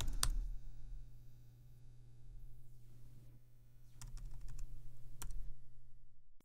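Typing on a computer keyboard: a few scattered key clicks near the start and a cluster about four to five seconds in, over a steady low hum.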